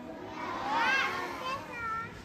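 Young children's high voices calling out together, once from about half a second in and again briefly near the end, as a group answer such as a chorus of "thank you".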